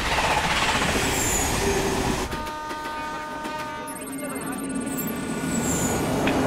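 A suburban electric train rushing past, then a steady multi-tone train horn sounding for nearly two seconds from about two seconds in.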